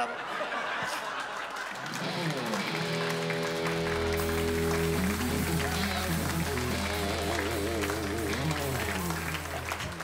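Audience laughing and applauding. About two seconds in, a live band comes in with a short instrumental phrase of gliding notes, then held chords over a low bass note from about four seconds.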